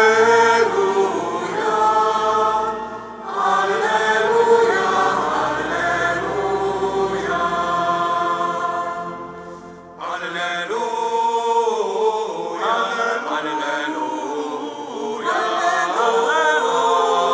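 Choir singing a sustained, chant-like Gospel acclamation as the Book of the Gospels is carried to the ambo, in phrases with short breaths about three seconds in and again near ten seconds.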